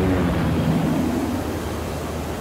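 Helicopter flying low and moving away, a steady engine and rotor hum that slowly fades.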